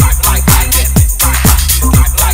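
Electronic dance music from a mid-1990s house record: a four-on-the-floor kick drum about twice a second over a steady bassline, with hi-hats above.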